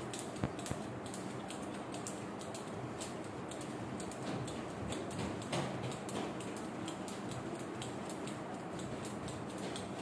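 Speed jump rope whipping round and ticking lightly against the floor on each turn, a rapid, even run of ticks.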